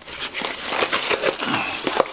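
Crumpled brown packing paper and cardboard rustling and crackling as hands rummage through a shipping box, a dense run of small crackles.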